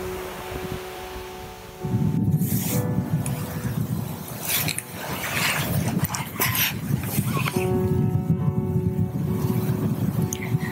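Soft background music with long held notes; about two seconds in, a loud rough rushing noise of waves breaking on the beach comes in and swells and falls irregularly under it.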